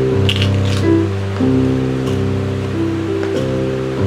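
Electronic keyboard playing held chords, changing chord about three times, over the steady whir of a fan close to the microphone.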